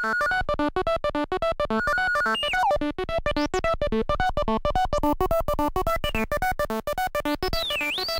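Groovesizer DIY 16-step sequencer playing a fast, repeating pattern of short notes on its 8-bit Auduino granular synth. Gliding tones sweep up and down about two and a half seconds in and again near the end as the synth's tone controls are turned.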